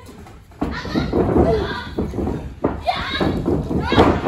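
Women wrestlers crying out and shouting in long, wavering yells during a grappling exchange, with a few sharp knocks of bodies on the ring.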